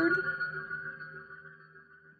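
A steady electronic tone of several pitches held together, fading away over about a second and a half.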